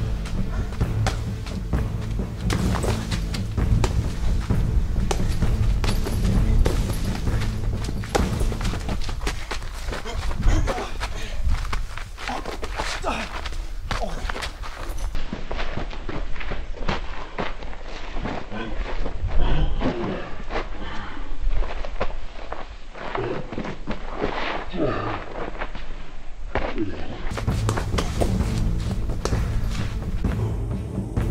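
Background music over repeated thuds of punches and kicks landing on a hanging heavy punching bag.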